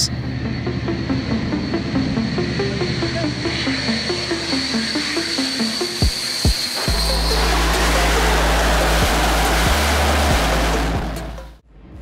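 Background music with a stepping melody, joined from about seven seconds in by a loud rushing jet roar as a fighter jet lands on an aircraft carrier; the roar fades out just before the end.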